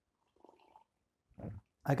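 A pause with a faint, brief throat sound from a man who has just swallowed a sip of drink, then a short vocal sound just before he speaks again.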